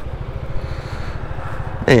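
Zontes 350E scooter's single-cylinder engine running steadily near idle with a low rumble as the scooter rolls slowly into a parking spot.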